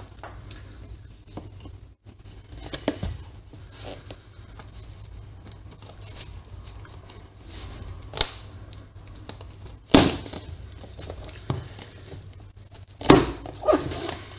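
White plastic packing straps on a cardboard box being cut with a knife, with several sharp snaps as the straps give way, two a little past the middle and another near the end. Between them, hands rustle and scrape on the cardboard.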